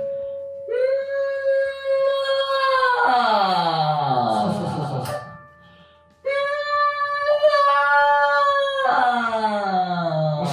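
A singer practising a mix-voice scale exercise twice. Each time a high note (high C#, then a semitone higher on D) is held for about two seconds and then slides down in pitch, the second attempt starting about a second after the first ends.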